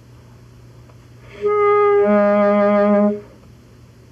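Saxophone playing one held note that drops an octave about half a second in and stops after nearly two seconds, played to show the effect of pressure on top of the mouthpiece.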